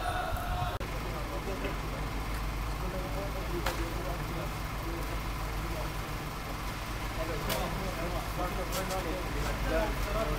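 A vehicle engine idling steadily, with faint, indistinct voices of people talking underneath and a few light clicks.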